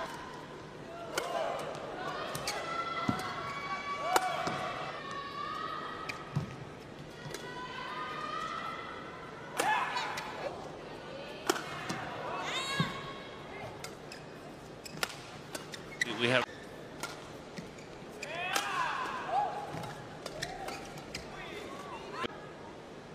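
Badminton rallies: rackets cracking sharply against the shuttlecock many times, with shoes squeaking on the court floor between strokes.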